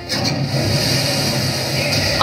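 Loud, steady hiss of gas spraying from a pipe in a cartoon's sound effects, over a low rumble.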